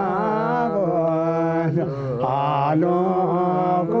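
A Himalayan shaman chanting in trance: one man's voice on long, held, wavering notes, with a short break about two seconds in.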